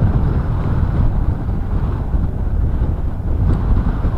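Strong easterly wind buffeting the microphone: a loud, low rumble that wavers with the gusts.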